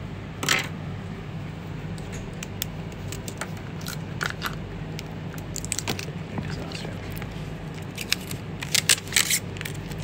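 Handling noise: scattered clicks and short rustles as clothes are moved about, with a quick run of louder clicks near the end, over a steady low hum.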